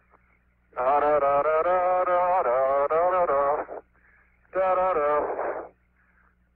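A man singing in long, drawn-out phrases over a narrow-band astronaut radio link with a steady low hum: two sung phrases, the second ending a little before the end.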